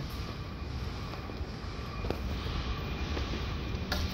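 Steady low rumble of rolling over the concrete floor of an underground car park, with one short click about two seconds in.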